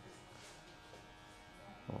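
Faint, steady background hum of a busy barbershop, with no distinct cutting or razor strokes standing out. A short spoken word comes at the very end.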